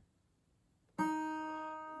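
Steel-string acoustic guitar's open first (high E) string plucked once about a second in, ringing as a single clear note that slowly fades. Silence before the pluck.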